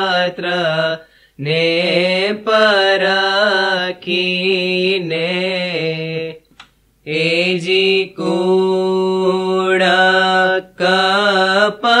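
A single voice singing a Gujarati Ismaili ginan in long, ornamented, wavering phrases. It stops for a short breath about a second in and again about halfway, and a new verse begins near the end.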